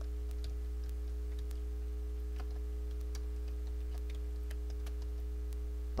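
Faint, irregular clicks of computer keyboard keys over a steady low hum.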